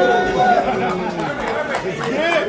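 Crowd chatter: many voices talking and calling out over one another, none of them clear.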